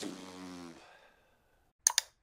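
A man's short, low vocal sound of about a second, fading out. Near the end come two sharp clicks, a mouse-click effect on a subscribe button.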